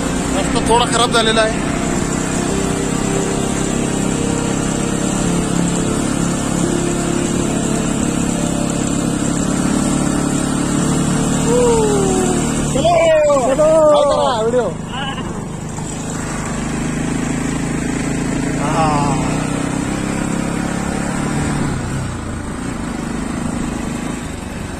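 Motorcycle engine running steadily while the bike is ridden, with short voice calls near the start, a little after halfway and again about three-quarters through.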